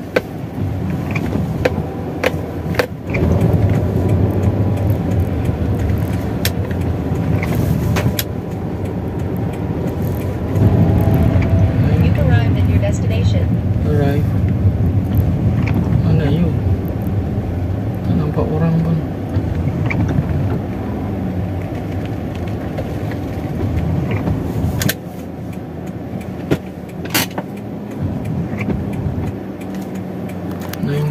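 Inside a car's cabin while driving slowly: a steady low engine and road rumble, with scattered sharp clicks.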